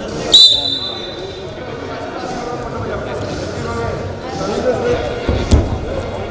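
Referee's whistle, one short, loud blast about half a second in, signalling the wrestling bout to start; then the echoing hall noise of a wrestling arena with voices, and dull thuds of the wrestlers' feet on the mat, heaviest near the end.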